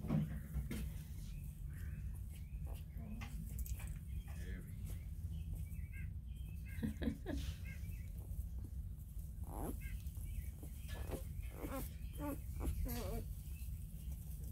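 Newborn black and tan coonhound puppies making little grunty noises and short thin squeaks while they sleep, with the squeaks coming more often in the second half.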